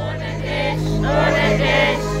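Live schlager pop song over a festival PA in a breakdown with the drums out. A held synth chord sustains under a group of voices singing, and the beat is gone.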